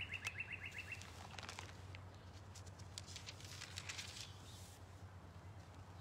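Songbirds in a backyard: a rapid, even trill that stops about a second in, then faint scattered chirps, over a low steady hum.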